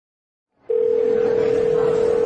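A steady, single-pitched telephone line tone, like a call ringing through, starts under a second in over faint room noise.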